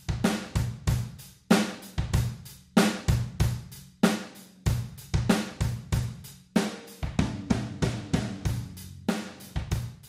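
Drum kit room-mic recording playing a beat of kick, snare and cymbals through a compressor plugin, with its time setting moving toward the fastest position, which brings out the room sound.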